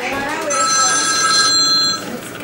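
Telephone ringing with an electronic ring, a steady chord of high tones, starting about half a second in.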